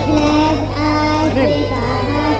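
Children singing a song together, holding long notes, with a steady low hum underneath.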